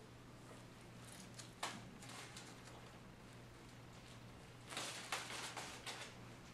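Faint handling sounds of a thin wire being worked through a block of modelling clay: a sharp click about one and a half seconds in, then a cluster of short scrapes and rustles near the end, over a low steady hum.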